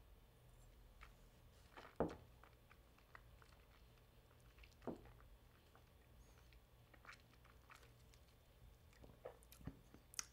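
Near silence with a few faint, scattered mouth noises from a person tasting a sip of whisky: soft lip smacks and a swallow. The clearest is a short click about two seconds in.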